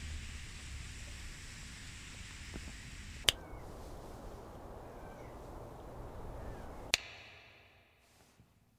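Two sharp finger snaps, about three seconds in and near the end, each switching a steady background ambience: first a city-street hum with low traffic rumble, then an outdoor ambience with a few faint bird chirps, which fades out after the second snap.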